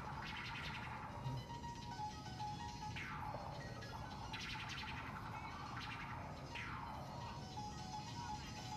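Faint music from the soundtrack of a Taiwanese glove puppet show recording, played back over room speakers, with several falling swoops repeating every couple of seconds.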